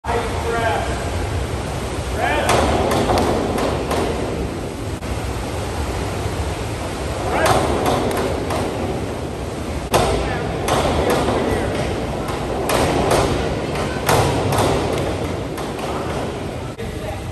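Diving springboards knocking and rattling several times in an echoing indoor pool hall, the sharpest knock about ten seconds in, with a diver's entry splash and background voices.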